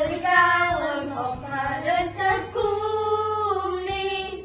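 Children singing a song together, ending on a long held note in the second half.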